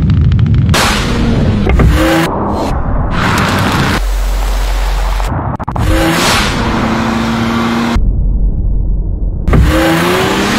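Engine of a Baleno RS, a BoosterJet turbo hatchback, revving hard as it accelerates at speed, with several climbing rev sweeps and passing whooshes cut together.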